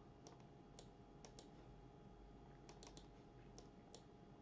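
Near silence broken by about ten faint, scattered clicks of a computer mouse and keyboard, over a low steady room hum.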